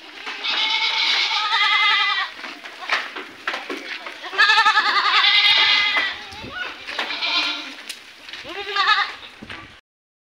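Young goat bucks bleating: about four long, wavering bleats, the loudest about halfway through.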